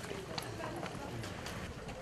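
Footsteps of several people walking on a paved alley: irregular shoe clicks, with indistinct chatter from the group.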